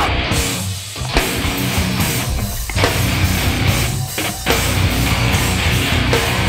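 Loud heavy band playing live, with distorted electric guitars, bass and drums driving a riff and no vocals. The riff stops short three times: about half a second in, at about two and a half seconds and at about four seconds.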